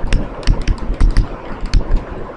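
Writing on a board or pad: quick, irregular taps and clicks of the writing instrument striking the surface, about ten in two seconds, some with a low thud.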